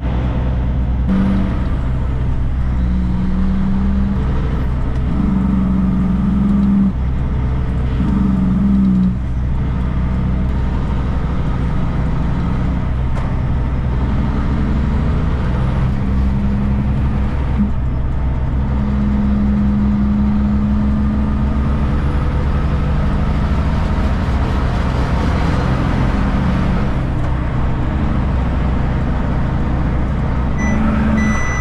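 Kenworth K200 cabover truck's Cummins diesel engine running as the truck drives away, its note rising and dropping in steps through gear changes.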